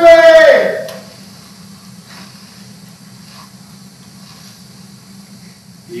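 A man's loud, drawn-out call in the first second, falling in pitch at its end. Then about five seconds of quiet stage room tone with a low steady hum.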